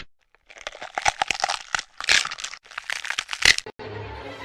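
A quick run of irregular crackling and crunching sounds that breaks off briefly a couple of times and stops just before the end.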